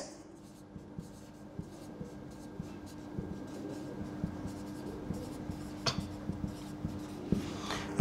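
Marker pen writing on a whiteboard: faint, irregular strokes and taps as words are written, with one sharper click about six seconds in, over a steady low hum.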